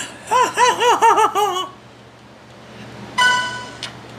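A young child's high-pitched giggling: a quick run of about eight rising-and-falling laughs, then, after a pause, a short held high note.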